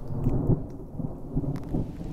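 Thunder rumbling with rain falling, the rumble swelling loudest about half a second in.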